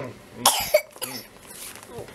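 A young child coughing once, a short burst about half a second in. It is the leftover cough of a recent illness.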